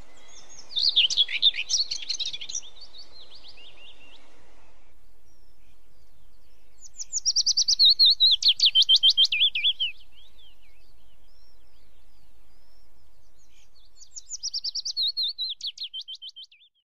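A songbird singing three bouts of quick, high notes, each run sliding down in pitch, a few seconds apart.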